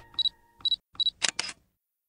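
Cartoon sound effects: three short high beeps about half a second apart, then two quick clicks.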